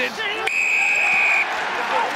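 Referee's whistle, one steady blast of about a second, blown for a holding-on penalty at the ruck, over stadium crowd noise.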